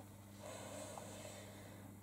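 A faint breath drawn in through the nose, swelling about half a second in and fading, over a low steady electrical hum.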